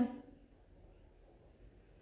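Near silence: faint room tone, after a woman's voice trails off at the very start.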